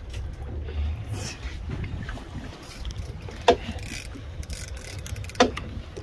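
Steady low rumble of an offshore fishing boat idling on the water, with wind on the microphone. Two sharp knocks stand out, about three and a half and five and a half seconds in.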